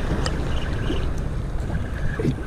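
Steady wind on the microphone over choppy water lapping.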